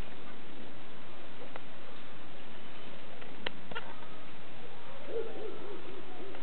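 Steady background hiss with a couple of faint clicks, then near the end a quick run of low, evenly repeated hooting notes, several a second.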